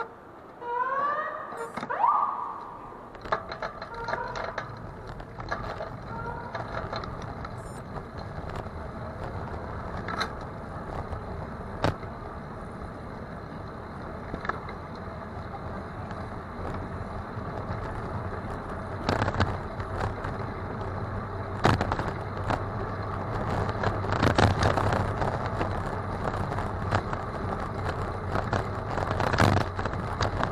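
Riding a bicycle on a city street: steady tyre and road noise with rattles and occasional sharp knocks from bumps. In the first couple of seconds an audible pedestrian crossing signal chirps in short rising tweets.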